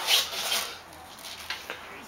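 A strongman's forceful, hissing breaths while he strains through a heavy one-arm dumbbell row. There are two short bursts in the first half second, then it goes quieter.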